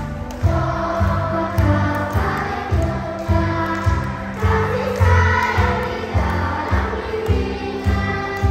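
Upbeat Christian children's song: a group of voices singing along to backing music with a steady beat, about two beats a second.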